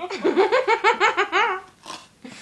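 A woman laughing hard: a quick, even run of about ten high-pitched 'ha' pulses that drops in pitch and stops after about a second and a half, followed by a short click.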